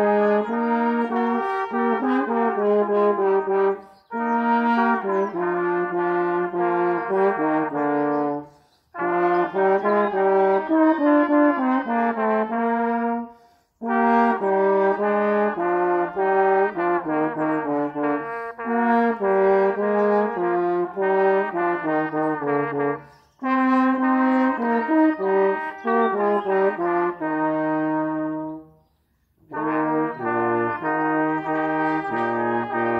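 Small brass ensemble, with trumpets among the instruments, playing a tune in several parts with held notes. The music comes in phrases, with short breaks between them.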